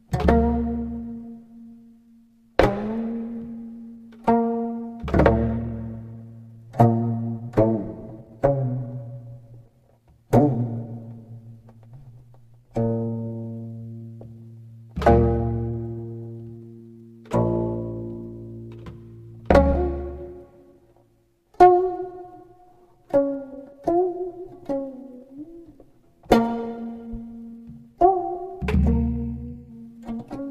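Slow solo sanjo-style music on a plucked string instrument: single low notes plucked every second or two, each left to ring and fade, with notes bent and slid in pitch a few seconds before the end.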